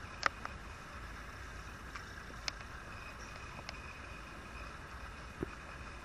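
Quiet outdoor background hiss, steady and faint, with a few short, faint clicks scattered through it.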